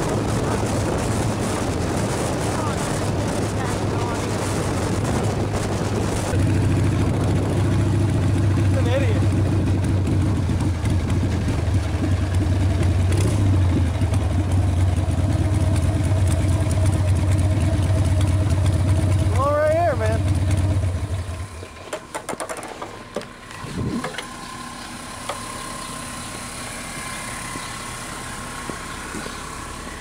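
Motorcycle running with wind noise on the microphone, then its engine idling steadily for about fifteen seconds before it is switched off about two-thirds of the way through.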